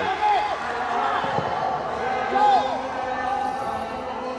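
Dull thuds of feet and a wooden staff hitting a carpeted competition floor during a wushu staff routine, the heaviest thump about a second and a half in. Voices call out in the hall at the same time.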